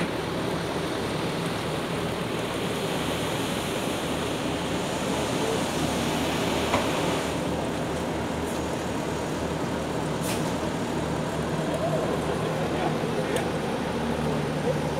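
Asphalt paver and dump truck running steadily while hot asphalt is tipped into the paver's hopper, with a few short clicks.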